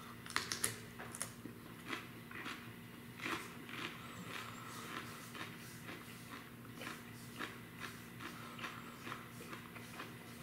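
A man chewing a raw Warthog chili pod close to the microphone: irregular small wet clicks and crunches, thickest in the first few seconds and thinning out after.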